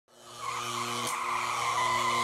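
Tyre squeal with a wavering high tone over a steady low engine drone, fading in from silence in the first half second; the drone breaks off briefly about a second in.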